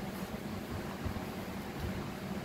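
Steady room noise: an even, unchanging hiss with a low hum beneath, with no distinct events.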